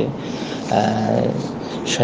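A man's voice holding a long, low, drawn-out tone, like the start of a chant, rather than ordinary speech.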